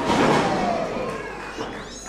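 A sudden heavy thud of a wrestler's body hitting the canvas of a wrestling ring, ringing out through the hall and fading over about a second and a half.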